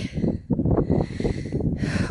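Wind buffeting the microphone in an irregular low rumble, with a walker's breathing; a breath is drawn near the end.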